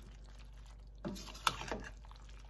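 Metal spoon stirring freshly cooked beans in a pressure-cooker pot: quiet wet stirring, then a few short knocks and one sharp clink of spoon on pot about one and a half seconds in.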